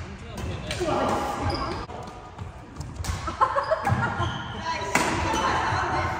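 Badminton doubles rally: several sharp racket hits on the shuttlecock and players' footwork on the court floor, mixed with people talking.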